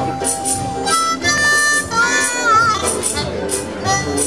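Acoustic string band playing a blues tune: strummed guitar, banjo and ukuleles under a wind-instrument lead that holds a long note, then climbs and wavers in a trill near the middle, with a rattling percussion stroke about twice a second.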